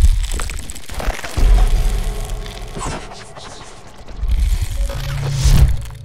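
Outro sting of sound effects and music: deep bass booms with crackling over them, in three swells. The last swell is the loudest, peaking shortly before the end and then dropping away.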